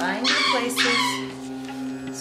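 A dog whining and yipping, two short high cries that slide up and down in pitch, over a steady droning music bed.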